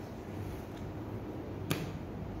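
A paperback page being flicked over, giving one sharp paper snap near the end and a fainter one about a third of the way in, over a steady low room hum.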